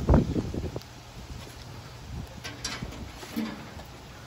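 Faint handling noise with a few light clicks as the metal panels of a laser cutter's cabinet are handled and opened.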